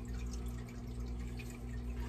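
Steady low hum with a faint trickle of running water, typical of a reef aquarium's pumps and plumbing running.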